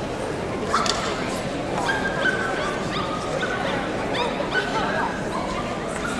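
A dog whining: a run of high, held whimpers, each about half a second long, some with short yips and sliding pitch, repeated several times.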